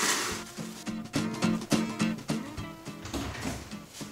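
Background music playing a steady run of notes. At the very start there is a brief rustle and tear of plastic wrap being pulled from its box.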